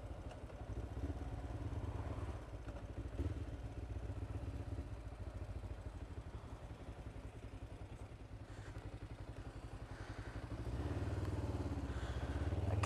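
Kawasaki GPZ 500 S parallel-twin engine running at a low, even pulse, rising a little about eleven seconds in as the bike moves off.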